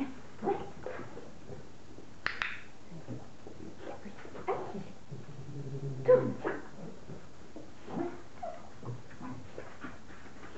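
French bulldog whining and yipping in short calls that glide up and down in pitch, about one a second, the loudest about six seconds in.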